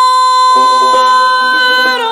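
Female singer holding one long, steady high note of Persian classical avaz in Bayat-e Esfahan. About half a second in, a tar comes in underneath with plucked notes.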